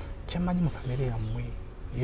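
A man's voice, with short held notes on a steady pitch.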